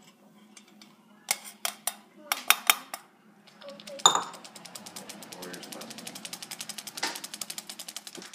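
Handheld stainless steel flour sifter sifting powdered sugar: a few separate metallic knocks, then from about four seconds in a rapid, even clicking of the sifter's mechanism, about ten clicks a second.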